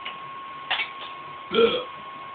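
A man burping once, loudly, about one and a half seconds in, after chugging a can of beer.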